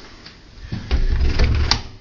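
Interior bathroom door being pulled shut: a low rumble as it swings, then a single sharp click of the latch catching near the end.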